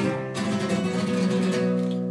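Acoustic guitar music: a chord strummed at the start that rings on steadily.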